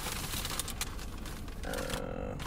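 Food packaging rustling and crinkling as it is handled, a dense run of small irregular crackles, with a brief hesitant "uh" from a woman near the end.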